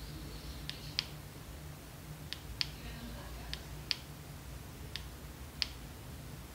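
Aloka electronic pocket dosimeter chirping: four pairs of short, high-pitched beeps, about one pair every second and a half, as it counts up dose under the handheld radio's transmission. The speaker presents this counting as a false reading caused by the radio.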